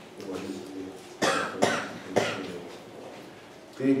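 A person coughing three times in quick succession, a short sharp burst each time.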